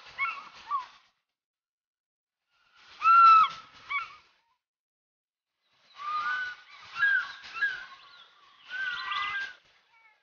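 A bird calling: loud, honking calls in short bursts of one to two seconds, with silent gaps of a second or two between them.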